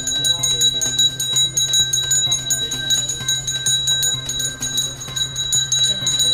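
A puja hand bell rung rapidly and continuously during worship: a fast, unbroken jangle of strikes with a steady high ring.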